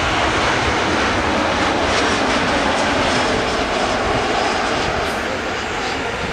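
Jet engines of a Ryanair Boeing 737 on landing approach, a steady loud rushing noise as the airliner passes low overhead and descends over the runway. The noise eases slightly near the end.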